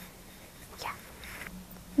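Quiet room tone with a faint, breathy, near-whispered "yeah" about a second in.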